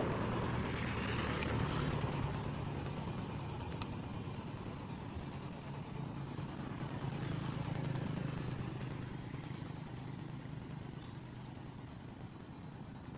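Motor vehicle engine noise: a low, steady hum that swells and fades twice, with a couple of faint clicks.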